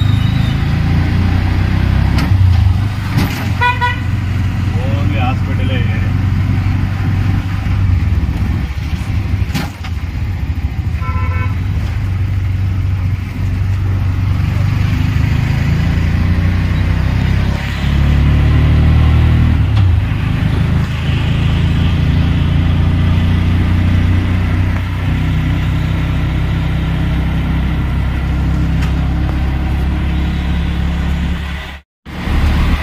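Auto-rickshaw engine running steadily under way, heard from inside the cabin with street traffic around it. Vehicle horns beep in short pulsed toots about three seconds in and again about eleven seconds in.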